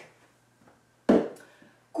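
A single sharp thump about a second in, dying away within half a second: a self-tan foam bottle being thrown out among the discarded cosmetics.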